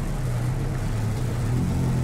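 Steady low mechanical hum, like an idling engine, holding one even pitch with no rise or fall.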